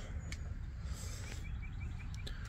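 Quiet outdoor background with a steady low rumble and a few faint clicks, and a quick run of four faint, high chirps from a small bird about one and a half seconds in.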